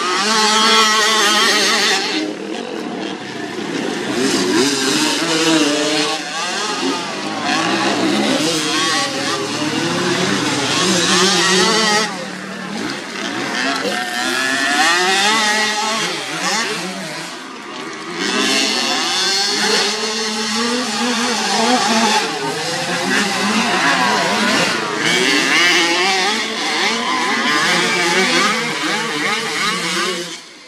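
Engines of small youth motocross bikes revving, their pitch rising and falling over and over as they ride the dirt track, with brief dips in loudness about two, twelve and eighteen seconds in.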